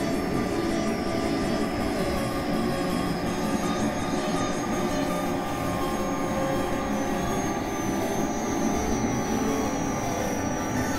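Experimental synthesizer noise drone: a dense, steady wash of noise with thin high whistling tones held above it. One of the high tones steps up in pitch about seven seconds in.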